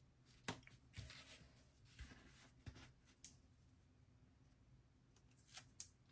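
Faint clicks and light paper handling as a small cut-out sticker is picked up and positioned with metal tweezers on a planner page. There are a few scattered taps, the sharpest about half a second in, and two close together near the end.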